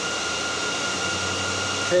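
Dell R740 server's cooling fans running: a steady rush of air with a constant high-pitched whine, loud enough to be called sort of annoying.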